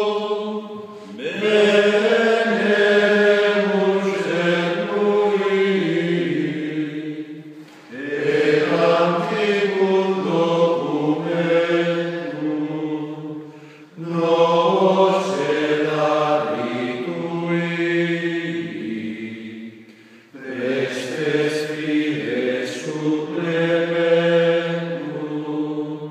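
Unaccompanied liturgical chant sung in a low male register, the hymn of Benediction before the Blessed Sacrament, in long held phrases of about six seconds with a short breath between each.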